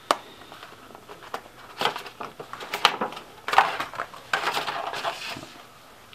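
Cardboard gift-box packaging being handled and opened to take out a leather phone case: irregular rustling and scraping with a few sharp clicks, busiest in the middle.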